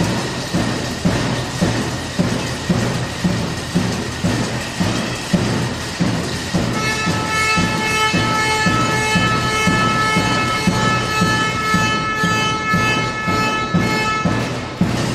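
Music with a steady beat of about two thumps a second, joined about seven seconds in by a long held horn-like tone that stops near the end.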